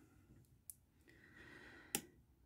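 Near silence: room tone, with a faint tick and one short, sharp click just before the end.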